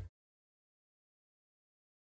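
Silence: the soundtrack drops out completely just after the start, with no sound at all.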